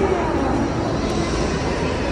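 Steady, fairly loud background din with no clear events, faint voices showing through near the start.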